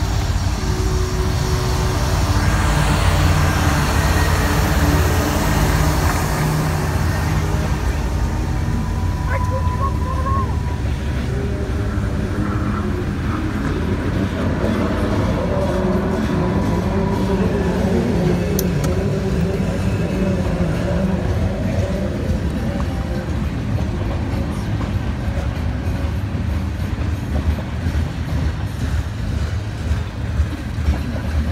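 A diesel-led freight train passes close by. The locomotives' engines are loudest in the first few seconds, then comes the steady rumble and clatter of covered hoppers and tank cars rolling over the rails.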